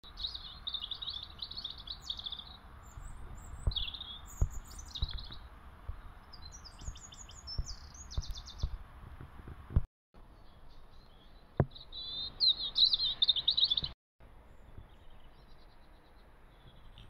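Small songbirds chirping and trilling in short high bursts, over a low rumble of wind on the microphone with a few soft knocks. The sound breaks off briefly twice.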